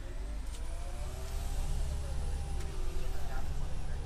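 Orion VII CNG city bus heard from on board: a steady low engine rumble, with a faint high whine that rises and falls.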